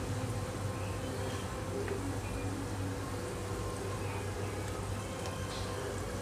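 Gulab jamun dough balls deep-frying in a pot of hot oil: a steady sizzle and bubbling, with a low steady hum underneath.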